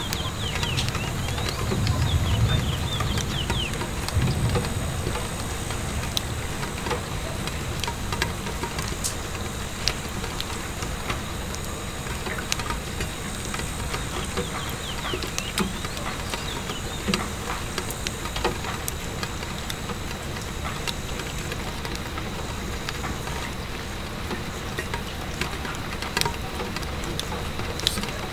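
Steady rain pattering on a window pane, mixed with the small irregular pops and crackles of a wood fire. A low rumble swells a couple of seconds in and fades again.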